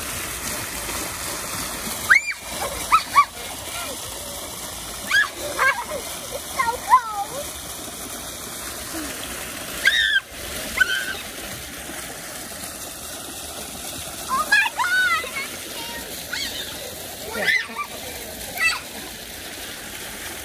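Fountain jets splashing steadily into the basin, with short high-pitched voice sounds breaking in several times.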